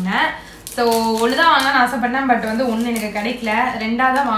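A woman speaking, with a brief pause about half a second in.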